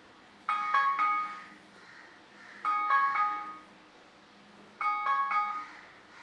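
A mobile phone ringtone: a short chiming phrase of a few notes, repeating about every two seconds, three times.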